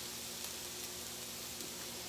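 Bell peppers and onions frying in a skillet: a steady sizzle.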